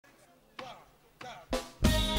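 Live Haitian konpa band starting up: two short vocal calls, then a drum hit, and near the end the full band with drums, bass and horns comes in loudly.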